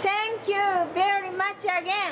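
A woman's raised, high-pitched voice calling out in four or five short phrases.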